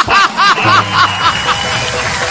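A high-pitched laugh in a quick run of 'ha' notes, about five a second, fading out over the first second and a half. Background music with a low sustained note comes in beneath it about half a second in.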